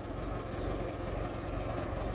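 Small tractor's diesel engine running steadily as it pulls a ridging implement through the soil to cut irrigation furrows.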